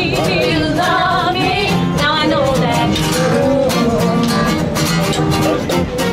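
Women singing a song live to acoustic guitar accompaniment, with vibrato on held notes.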